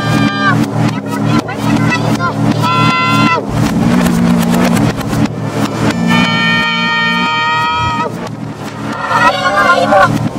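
Heavily effected meme audio: a pitch-shifted voice-like sound holding long notes three times, over a steady low electronic hum, with a wavering warble near the end.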